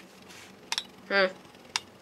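Two metal Beyblade spinning tops whirring in a plastic stadium, clinking against each other with sharp metallic clicks about a second apart.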